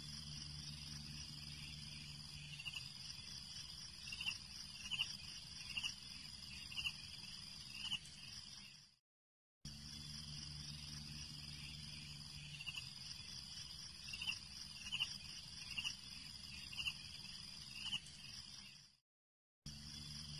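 Faint nature-ambience track: a steady insect-like trill with a low hum under it and a run of short chirps. The same stretch of about nine seconds plays twice, fading out and breaking off briefly between the two passes.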